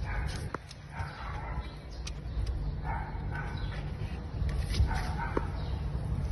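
Young kittens mewing, about four short high calls spread a second or two apart, over a low rumble and a few light clicks.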